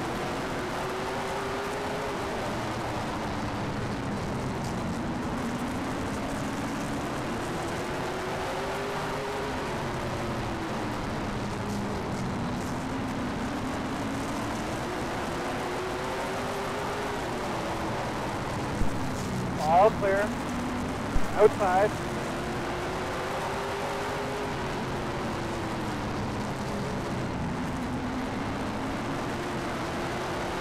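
Late model stock car's V8 engine heard from the onboard camera at racing speed, its pitch climbing on each straight and dropping into each turn in slow waves about every seven seconds. A few short bursts of radio voice come through about two-thirds of the way in.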